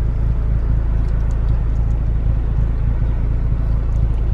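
Steady low rumble of a car's engine idling, heard inside the cabin.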